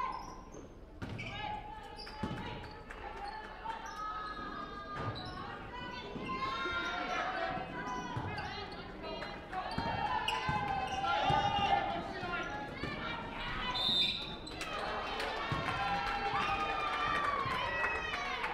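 A basketball is dribbled on a hardwood gym floor during play, the bounces echoing in the large hall, with voices calling out over it.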